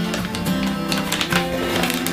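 Background music led by a plucked acoustic guitar, with steady sustained notes.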